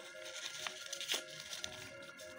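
Soft crinkling of white tissue paper being folded by hand into an accordion, with a couple of faint ticks, over quiet background music with held notes.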